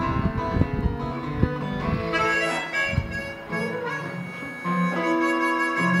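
Harmonica playing an instrumental break over a strummed acoustic guitar. Strumming is strongest in the first couple of seconds, and long held harmonica notes take over from about two seconds in.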